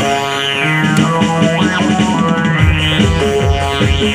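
Live band music played on electronic keyboards: sustained chords with a falling sweep and then a rising one. The drum beat drops out and comes back about two and a half seconds in.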